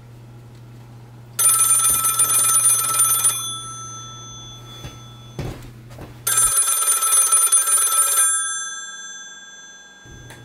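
Black rotary desk telephone's bell ringing twice, each ring about two seconds long with a fading tail. There is a short knock between the rings.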